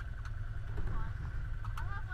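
Stopped side-by-side UTVs idling, a steady low rumble under faint background voices.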